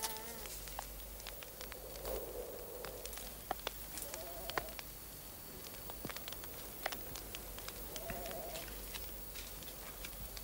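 Sheep bleating: three short wavering calls, about two seconds in, past four seconds and near eight seconds, over a faint hiss sprinkled with small clicks.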